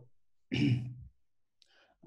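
A person clearing their throat once, briefly, about half a second in, heard over a video call.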